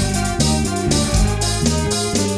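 Instrumental progressive rock from a trio: electric guitar, electric bass and drum kit playing together, with the cymbals striking in a steady pulse over moving bass notes.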